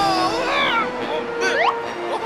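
Cartoon soundtrack: music with held notes under squeaky, gliding character vocalizations, with a couple of quick rising squeals about one and a half seconds in.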